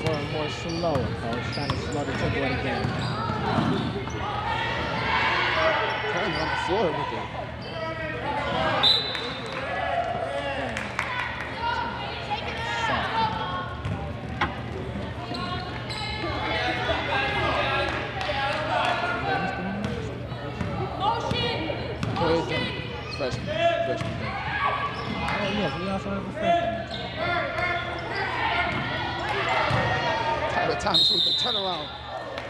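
Basketball game sounds on a hardwood gym floor: a ball bouncing repeatedly as it is dribbled, a few brief high squeaks, and players and spectators talking and calling out, all over a steady low hum in a large echoing gym.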